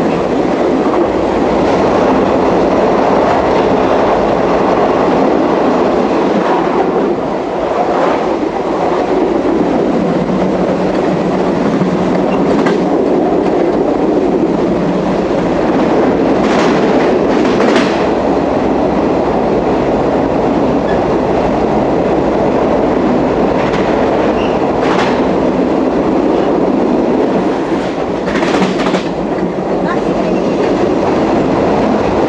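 Amtrak California Zephyr passenger train rolling along mountain track, heard from its last car: a steady rumble of wheels on rails. A few sharp clacks break through, about 8 seconds in, a pair about halfway through, a pair a little later, and a cluster near the end.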